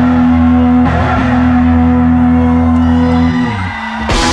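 Rock band playing live, with guitar and bass holding a sustained chord that dies away near the end before the full band crashes back in.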